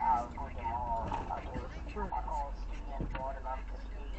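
People talking inside a car over the low, steady rumble of the car, with one sharp click about three seconds in.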